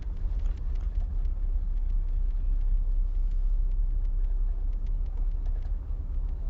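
A low, steady rumble with a few faint clicks.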